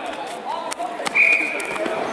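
A referee's whistle: one short, steady, high-pitched blast of under a second about halfway through, with a couple of sharp knocks just before it.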